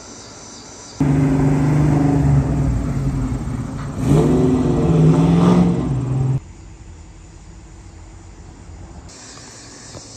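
A car engine running loud with a steady low drone, then revving up as it accelerates about four seconds in. The sound starts abruptly about a second in and cuts off abruptly after about six seconds.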